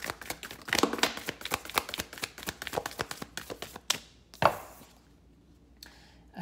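A deck of oracle cards being shuffled by hand: a fast run of crisp card clicks and flutters that stops about four and a half seconds in, with one sharper snap as the cards are knocked together.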